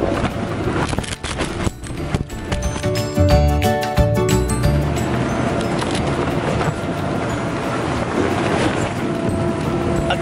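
Thumps, knocks and scuffs of someone scrambling through an inflatable obstacle course, with vinyl rubbing against the camera, heaviest in the first half. A steady hum and background music run underneath.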